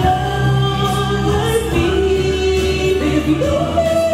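A woman singing into a microphone over instrumental accompaniment, heard through the hall's PA. She holds long notes, and her voice steps up in pitch near the end.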